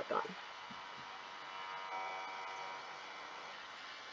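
Steady faint electrical hum and hiss in the recording background, with several thin steady tones, after a last spoken word at the very start.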